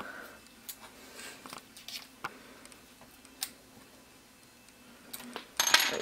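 Scattered light clicks and taps of a hex driver turning the motor-mount screw on an RC truck, tightened against a strip of paper wedged between the pinion and spur gears to set the gear mesh. A brief louder rustle comes near the end.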